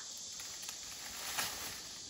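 A steady, high insect chorus in the summer garden, with a few faint light knocks, the clearest about one and a half seconds in.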